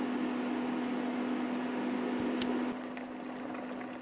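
A pot of chicken broth and diced tomatoes heating on an electric cooktop toward a boil: a soft hiss of the heating liquid over a steady low hum, with one small click about two and a half seconds in, after which it gets slightly quieter.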